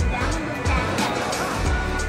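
Background music with a steady beat, with a voice talking under it.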